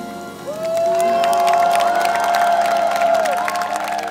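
A live jazz trio of piano, drums and double bass rings out its closing chord with cymbal strikes while the crowd cheers and whoops. One voice scoops up into a long high held note about half a second in and lets it fall away near the end.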